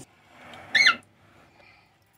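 A single short, high-pitched squeak, rising then falling, about three-quarters of a second in, just after some soft rustling.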